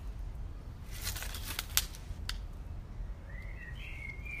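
Outdoor ambience with a steady low rumble and a few short clicks, then a bird calling near the end, one short arching call.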